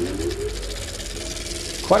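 A short sound effect: a steady low hum with a pitched tone that rises over the first half second and then holds. A man's voice begins near the end.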